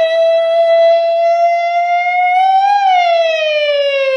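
A single long held note, rich in overtones, creeping slightly up in pitch and then sliding smoothly down from about three seconds in.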